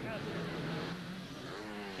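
Motocross motorcycle engine running steadily on the race track.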